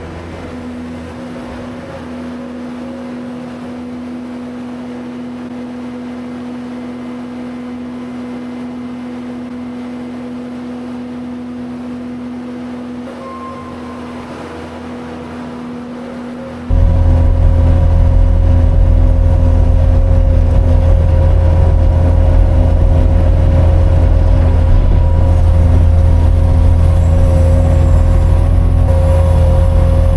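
Bobcat skid-steer loader's diesel engine running steadily, heard at a distance. Just past halfway it suddenly becomes much louder and fuller, heard from inside the loader's cab.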